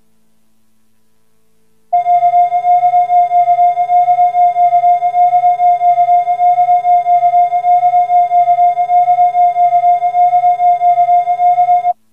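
A loud, steady electronic test tone with a fast wavering pulse starts about two seconds in, over a faint hum. It holds one pitch and cuts off suddenly at the end.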